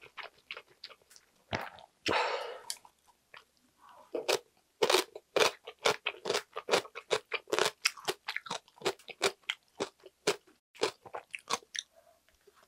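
Close-miked chewing of a mouthful of ramen noodles with the mouth closed: a quick run of small wet clicks, about four a second, that thickens from about four seconds in, with a short rushing noise about two seconds in.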